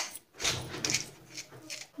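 Hand pepper mill grinding black peppercorns: a few short grinding bursts in the first second, then fainter handling noises.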